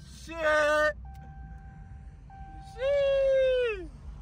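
A person's voice in two drawn-out, held calls, the second longer and falling in pitch at its end. A low steady rumble runs underneath, with a faint thin tone between the calls.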